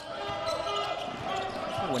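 Basketball being dribbled on a hardwood court during live play, over the steady background noise of the arena.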